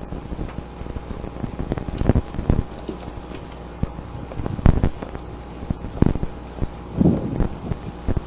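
A handful of dull, irregular knocks and thumps, about five, over steady wind noise and a low hum.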